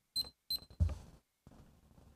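Two short, high electronic beeps about a third of a second apart, followed by a dull low thump.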